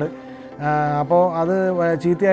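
A man speaking in long, drawn-out phrases, after a brief pause at the start.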